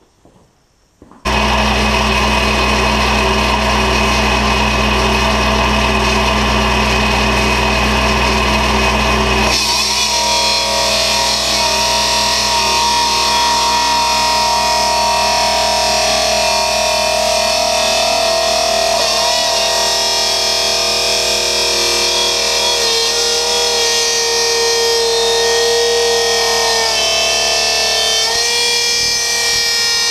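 Hydraulic multi-cutter with a 400 mm diamond-coated blade starting suddenly about a second in and running with a steady low hum. From about ten seconds in the blade grinds through a steel-reinforced flexible hose, a loud harsh sound with high tones that waver and shift.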